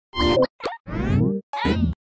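Four quick cartoon sound effects for an animated title ident, short pitched pops and sounds that slide in pitch, all within about two seconds.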